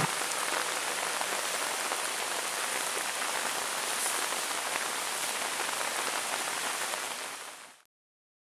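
Steady rain falling on leaves and ground, fading out just before the end.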